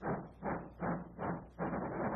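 Cartoon steam locomotive chuffing as it starts off: four puffs of steam that come quicker and quicker, then run together into a steady chugging rush about three quarters of the way in.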